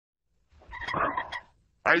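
A short croaky, rattling cartoon sound effect from the show's Mailbox character, lasting about a second; a voice says "Hey" at the very end.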